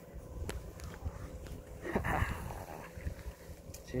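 Steady low hum of a fishing boat's engine, with a few sharp clicks from the rod and line as a rockfish is reeled up, and a brief voice sound about two seconds in.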